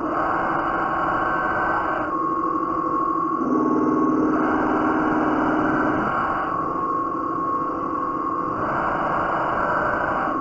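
Metal lathe running with a steady whine while a boring bar cuts inside an aluminum bore, throwing stringy chips. The rougher cutting noise comes and goes three times as the bore is taken out a few thousandths at a time toward a bearing press fit.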